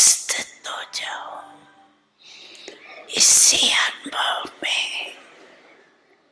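An elderly woman speaking into a microphone in a breathy, half-whispered voice, in two phrases, not in English.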